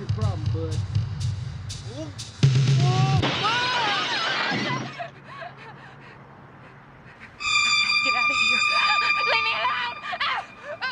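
Film soundtrack: a sudden loud crash with a burst of noise like breaking glass about two and a half seconds in, over a woman's wordless gasps and cries and a low drone. Near the end a steady high electronic tone sounds for about two seconds.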